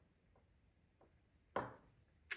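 Faint ticks, then one sharp light tap about one and a half seconds in: a watercolour brush knocking against the plastic paint tray as it is dipped into a paint pan.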